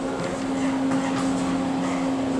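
Steady low ventilation hum: one unchanging tone with a softer one beneath it.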